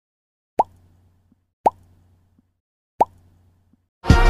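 Three short pitched pop sound effects, spaced about a second apart, each dying away quickly.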